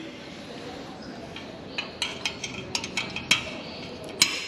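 Light metallic clicks and clinks of a clevis pin and cable fitting being worked into an aluminium elevator control horn. They come as a quick, irregular run in the second half, with one louder click near the end.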